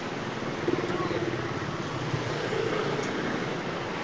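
A pause in speech filled by steady background noise, with faint traces of a voice.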